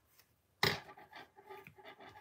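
Hands handling a layered paper card and linen thread: a sudden sharp paper sound about half a second in, then soft, irregular rubbing and scratching.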